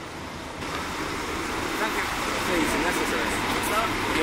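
Steady road-traffic and vehicle noise, growing slightly louder over the first couple of seconds, with faint voices in the background.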